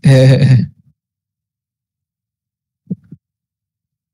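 A man's brief laugh at the start, then silence, broken only by a faint short sound about three seconds in.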